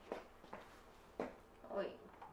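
A quiet small room with a few faint short clicks and a brief murmur of a voice near the end.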